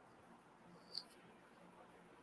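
Near silence: faint room tone, with one brief, sharp high-pitched click about a second in.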